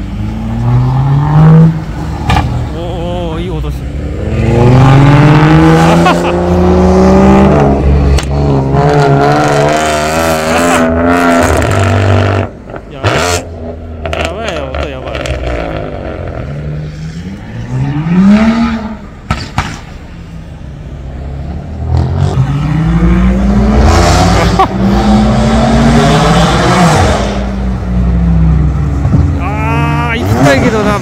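Several high-performance car engines revving hard and accelerating away one after another, each rising in pitch through the gears with a drop at every shift. A loud run of these comes about four to eight seconds in, and another from about twenty-two to twenty-seven seconds.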